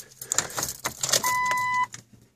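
Keys rattling at the ignition, then a single steady electronic warning chime from the Jeep Cherokee's dashboard about a second and a quarter in, lasting just over half a second, as the key is switched on before starting.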